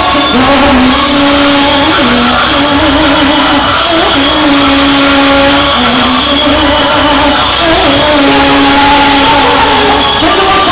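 Loud live Arabic-style pop music, a melody of long held notes gliding between pitches over the band's backing, heavily distorted on the recording.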